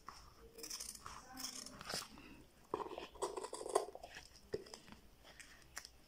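Scissors cutting through a glued leather strip: a series of quiet, irregular snips, busiest around the middle.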